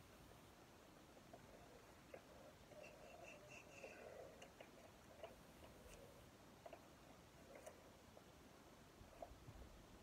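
Near silence, with faint rustling and a few small clicks from a paper package of photos being handled and opened by hand, the rustling mostly a few seconds in.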